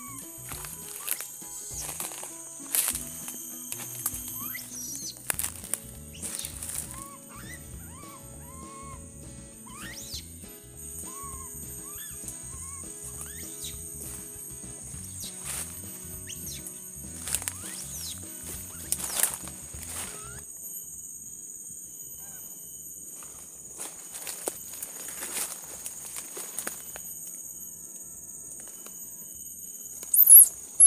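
Footsteps crunching through dry leaf litter and twigs in forest undergrowth, with scattered cracks and rustles, over a steady high-pitched insect drone. Background music plays under it until about two-thirds of the way through, then stops.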